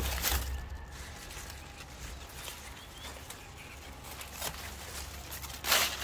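Quiet outdoor background with a steady low rumble. There is a faint brief click about four and a half seconds in and a louder short rustle near the end.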